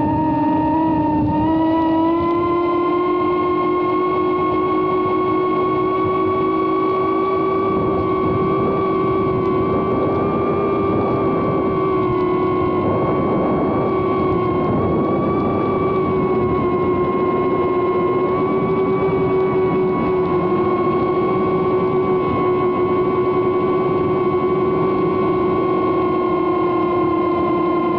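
Emax Tinyhawk II Freestyle micro FPV drone's brushless motors and propellers whining steadily, as picked up by the camera mounted on the drone. The pitch steps up slightly about two seconds in and then holds, wavering a little with throttle.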